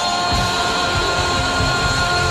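Live rock band playing the song's climax: a long held high note over electric guitar, with drums and bass coming in heavily about a third of a second in.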